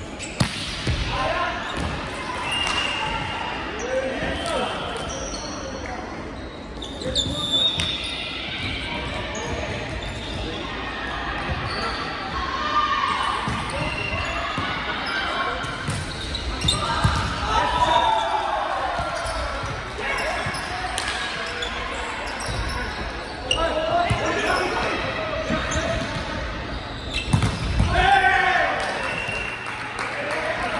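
Volleyball match in a large sports hall: a rally of sharp, echoing ball strikes as the ball is served, passed and hit, with players shouting short calls between the hits.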